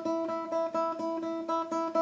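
Takamine Hirade TH5C nylon-string classical guitar played with the tremolo technique: one note plucked over and over in a quick, even series.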